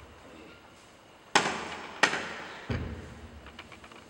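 Hand-struck hula percussion: two sharp slaps about a second and a half in, half a second apart, then a deep thud, each ringing out in a large hall's echo.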